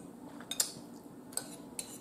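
Metal fork working in a bowl: a few light clinks and clicks of the fork against the dish, over a faint steady hum.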